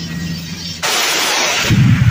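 Anti-aircraft weapon fire: a sudden loud rushing blast of noise about a second in, lasting just under a second, then a deep boom near the end, over background music.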